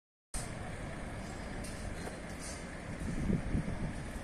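Outdoor street ambience: a steady low rumble, growing louder about three seconds in.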